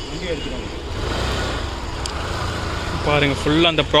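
A motor vehicle passing: a low rumble with a swell of road noise, and a man's voice starting near the end.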